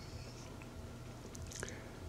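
Faint room tone: a low hiss with a faint steady hum and a few small clicks.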